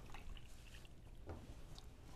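Faint pour of liquid from a glass measuring cup into a well of flour in a bowl, a soft, quiet trickle.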